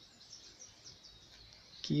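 Faint, short, high chirps of birds behind low background noise, a few in the first second. A man's voice comes back just before the end.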